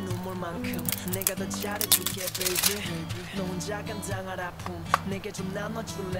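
Background pop music with singing, over which a plastic powder compact is opened and handled: a cluster of clicks and crackles about two seconds in and a single sharp click near five seconds.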